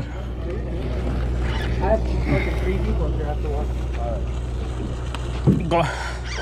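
Low, steady drone of a sportfishing boat's machinery, with faint voices of other people on deck in the background.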